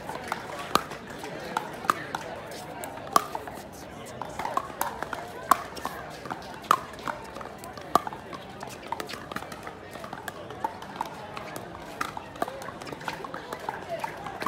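Pickleball paddles striking a hard plastic ball in a fast doubles rally: a string of sharp pops at irregular intervals, roughly one a second, over a murmur of voices.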